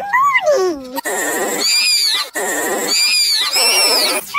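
Cartoon pig characters snorting and grunting, chopped into short pieces that cut off abruptly and repeat, as in a mashup edit.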